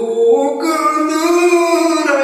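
A man's voice singing a Kashmiri Sufi manqabat, holding long notes that bend slowly up and down.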